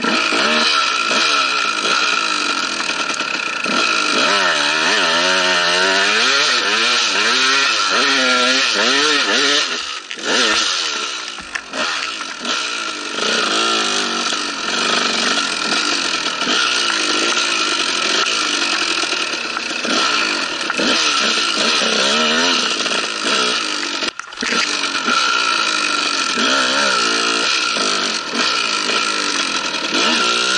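Dirt bike engine revving hard under throttle, its pitch rising and falling over and over as the rider works the throttle and gears. It backs off briefly about ten seconds in, again just after that, and once more past the twenty-four-second mark.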